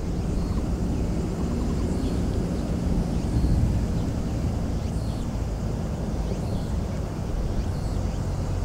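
Outdoor field ambience: a steady low rumble with a few faint, short high chirps now and then.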